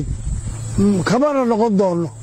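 A man's voice speaking, starting almost a second in, after a pause filled by low rumbling wind noise on the microphone and a steady low hum.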